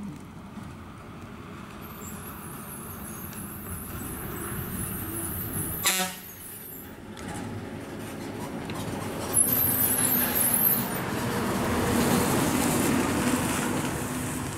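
KSRTC bus's diesel engine running as the bus comes round a hairpin bend, growing louder as it nears. There is a short horn toot about six seconds in, and a brief hiss near ten seconds.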